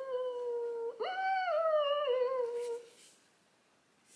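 A woman humming a closed-mouth "mmm" of delight: a steady high hum for about a second, then a jump to a higher note that slides slowly back down, ending about three seconds in.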